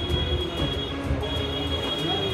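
Background music with a high note held over a low, steady bed; the high note breaks off briefly about a second in, then resumes.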